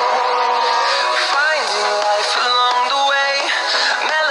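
A pop song playing, with a sung vocal line over the backing music and little bass.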